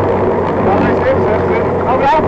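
Fiat 126p rally car's air-cooled two-cylinder engine running steadily under load, heard inside the cabin at speed, with the co-driver's voice over it.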